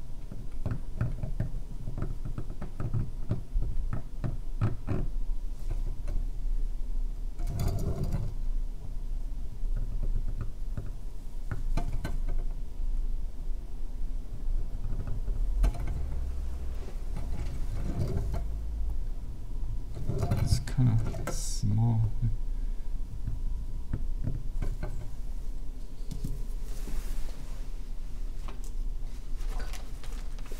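Steel carving knife cutting into a stone seal: a rapid run of small scratchy clicks over the first several seconds, then scattered knocks and rubbing as the stone is handled in the seal-carving vise.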